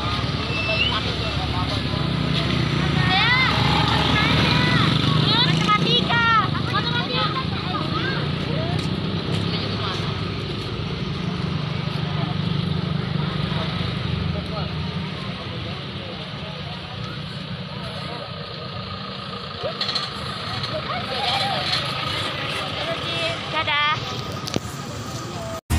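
Many schoolchildren's voices chattering and calling out, with bursts of high calls a few seconds in and again near the end, over the steady low running of a motor scooter engine.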